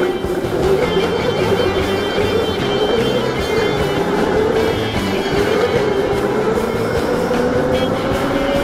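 A go-kart's motor whining under music, its pitch rising and falling as the kart speeds up and slows through the corners.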